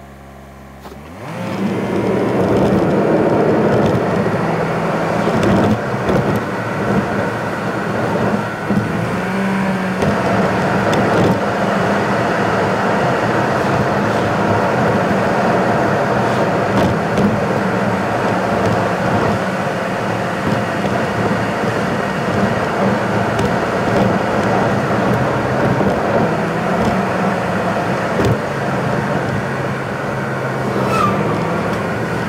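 A car on the move, with engine and tyre noise on the road. It is quieter for the first second, then the engine note rises as the car pulls away about a second in, and the road noise settles steady and loud.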